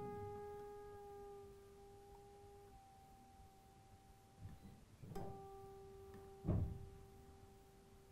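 A Fender Stratocaster's G string is plucked and left ringing while its tuning peg is turned, retuning it after a saddle adjustment for intonation; the pitch shifts slightly a little under three seconds in. The string is plucked again about five seconds in and rings on, with a soft knock about a second later.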